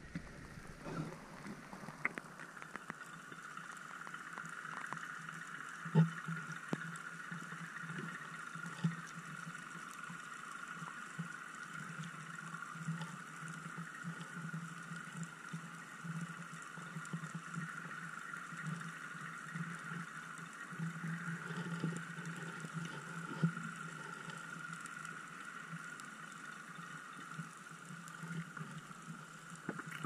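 Underwater sound heard through a camera's waterproof housing: a steady high hum over a low drone, with scattered clicks and knocks, the loudest about six seconds in.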